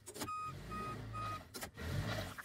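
Forklift reversing alarm beeping three times, about two beeps a second, over the low hum of its engine; a short knock follows near the end.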